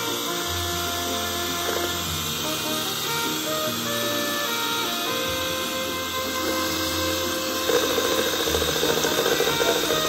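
Background music playing, with a Betty Crocker 4-speed electric hand mixer beating batter in a plastic bowl. The mixer gets louder from about eight seconds in.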